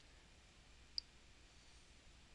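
Near silence, with a single computer mouse button click about a second in.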